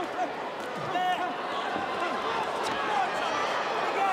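Boxing-arena crowd: many overlapping voices chattering and calling out around the ring.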